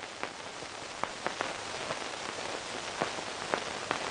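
A steady hiss, with a number of brief faint clicks scattered through it.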